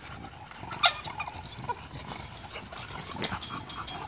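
English bulldogs panting and shuffling about, with one short sharp sound about a second in and faint clicks near the end.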